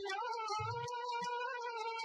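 Film song music: a woman's singing voice holds one long note, gliding up onto it at the start and wavering slightly. Light ticking percussion runs under it at about four ticks a second, and a low drum beat falls about half a second in.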